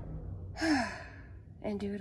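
A person's voice: a short breathy sigh that falls in pitch, then, about a second later, a steady voiced sound held on one pitch.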